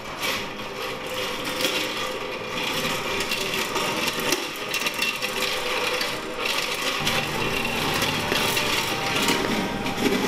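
Metal-legged chair dragged across a hard hallway floor, its legs scraping steadily without a break.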